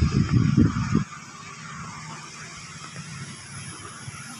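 A low rumble, loud for about the first second, then dropping suddenly to a faint, steady low hum of background noise.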